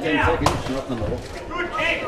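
A single sharp smack of a blow landing in a Muay Thai bout, about half a second in, with voices shouting around it.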